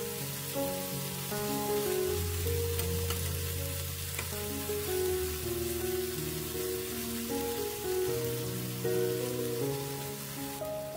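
Gochujang-marinated deodeok strips sizzling in hot oil in a frying pan, a steady hiss. Background music with a melody of changing notes plays underneath.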